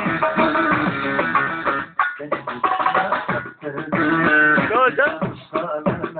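Live Turkish folk music: an electronic keyboard playing a plucked-string, saz-like melody, with a man's voice singing into a microphone. There is a brief break in the sound about two seconds in.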